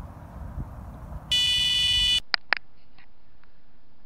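Wind buffeting the microphone, then an electronic carp bite alarm sounds one steady high-pitched tone for about a second, signalling a run. The tone cuts off suddenly and is followed by two sharp clicks.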